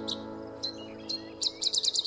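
A strummed acoustic guitar chord ringing out and slowly fading, with a songbird chirping over it in short, high notes. The chirps are spaced at first and come in a quick run near the end.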